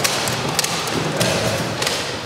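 A handful of short, sharp knocks and taps from armoured fighters moving about with rattan swords and shields: weapons, shields and armour knocking together and against the wooden floor.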